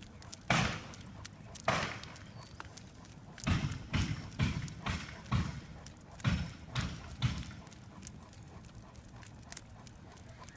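Hammer blows on a house frame under construction. Two single bangs come first, then a quicker run of about eight bangs roughly half a second apart, then it stops.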